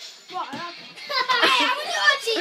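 Children's high-pitched voices calling out and chattering over one another as they play, without clear words, starting about half a second in and growing louder.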